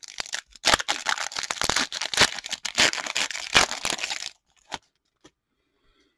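Shiny foil wrapper of a 2022-23 Upper Deck Series 2 hockey card pack being torn open and crinkled by hand: a dense run of rips and crackles that stops a little past four seconds in.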